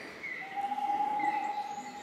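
Forest birdsong played back as part of a museum exhibit's nature soundscape. One bird repeats short falling chirps, and a long, steady whistled note begins about a quarter of the way in and holds to the end.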